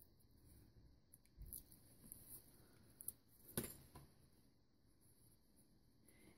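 Near silence, with a few faint paper rustles and small ticks as the backing is peeled off a strip of homemade washi tape. The clearest tick comes a little past halfway.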